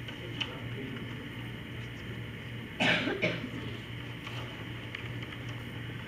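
A person coughing twice in quick succession about three seconds in, over a steady low hum in the room.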